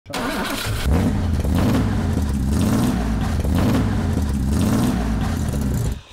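BMW 2800 CS straight-six engine running through its new stainless-steel exhaust, a loud, steady, deep exhaust note.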